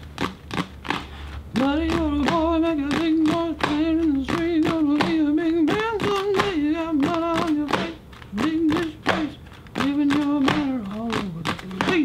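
A man singing a wordless tune in held, wavering notes over a steady beat of sharp taps, about three to four a second, with a short laugh about three seconds in.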